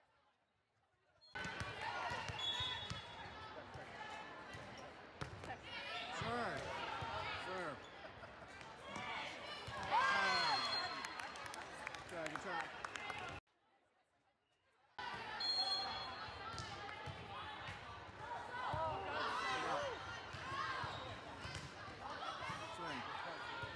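Indoor volleyball rally sounds in a large gym: the ball being struck and bouncing on the hard court, with players and spectators calling out and cheering. A short, high referee's whistle sounds twice, each a second or so after the sound cuts out briefly.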